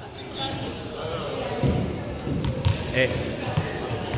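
A small ball bouncing a few times on a sports hall floor, separate knocks echoing in the large hall.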